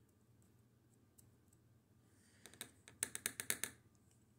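A quick run of about ten light clicks over a second and a half, starting past the halfway point. A thin metal pick is ticking and scraping between the brass liners inside a Craftsman folding knife's handle as it digs out packed lint.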